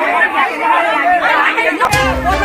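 Several people talking over one another: overlapping chatter.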